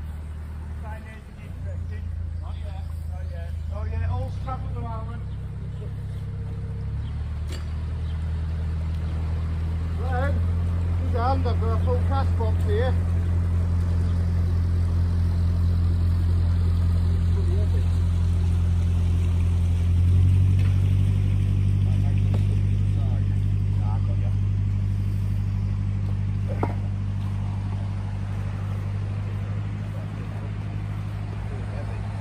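Narrowboat's diesel engine running with a steady low hum. Its note shifts in steps a few times and is loudest in the second half.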